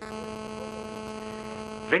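A steady low electrical buzz with many evenly spaced overtones that starts suddenly and cuts off just before the end, breaking into a phone-in call: interference on the telephone line.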